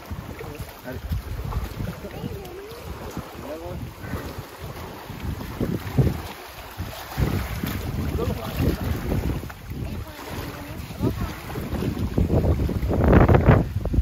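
Wind buffeting the microphone in irregular gusts, a low rumbling that swells to its loudest near the end.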